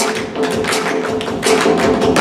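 Group of tap dancers' tap shoes striking the stage floor in a rapid run of many sharp taps, over backing music.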